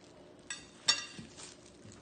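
Two clinks about half a second apart as a cake on its plastic base is set down onto a plate. The second is louder and rings briefly.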